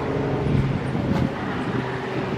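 An engine running steadily, a low drone with a louder, rougher stretch in the first second or so.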